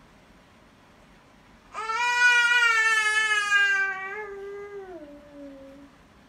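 A young child's voice in one long, loud, drawn-out call, its pitch slowly falling and then dropping lower near the end before it stops.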